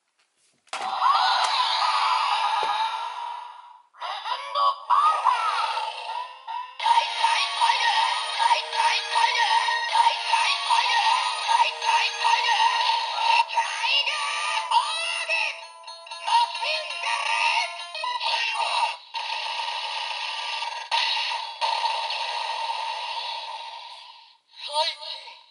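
DX Tiguardora toy playing electronic music and sung vocals through its small built-in speaker, tinny with no bass. The playback breaks off briefly a few times.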